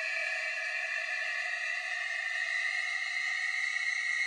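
Sustained synthesizer drone of several steady tones with a light hiss above them: the held-out tail of the track after its final hit, keeping an even level.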